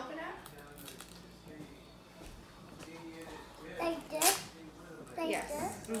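Paper pouch of gelatin mix rustling as a small child pulls at its sealed top, with one short, sharp paper crackle about four seconds in.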